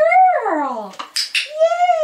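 A dog vocalizing in long, drawn-out whining howls that rise and fall in pitch, with a brief rustle about a second in.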